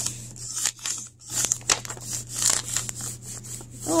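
Peeled wax crayon rubbed back and forth over paper laid on a leaf: a scratchy scraping in quick, uneven strokes, about three a second.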